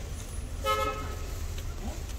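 A single short car horn toot, a steady held tone, about two-thirds of a second in, over a steady low street rumble.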